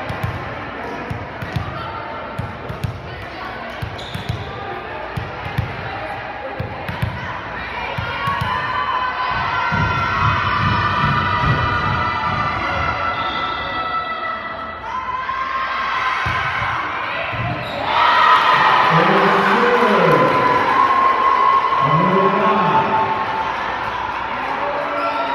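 Indoor volleyball rally in a gymnasium hall: repeated thuds of the ball off players' hands and arms over a background of spectators' voices. About eighteen seconds in, the crowd breaks into loud cheering and shouting as the point ends.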